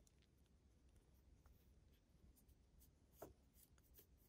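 Near silence: faint room tone, with the faint scratch of a crochet hook drawing yarn through stitches and a soft tick about three seconds in.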